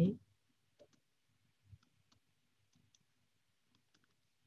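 A short spoken word right at the start, then a few faint, scattered clicks of someone working a computer.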